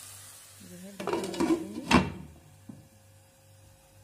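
Metal cookware clatter: a lid handled on a kadai, ending in one sharp clank about two seconds in. The masala in the pan is on a low flame.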